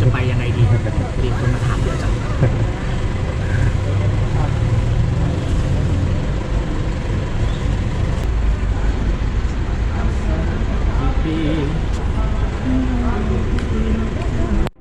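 Steady low rumble of vehicle engines and traffic, with people talking in the background.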